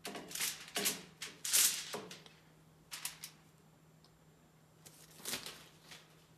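Crinkling and rustling of aluminium foil and gloves being handled as a greased machine spindle is laid down. The sound comes as a quick run of short rustles over the first two seconds, then a few more after pauses.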